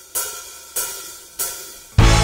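Drummer's count-in struck on a cymbal: sharp, evenly spaced strokes about two thirds of a second apart, each ringing out and fading, with the full band coming in at the very end.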